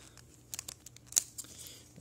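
Thin clear plastic sleeve crinkling as a screen protector is taken out of it by hand: a string of scattered sharp crackles, the loudest about a second in.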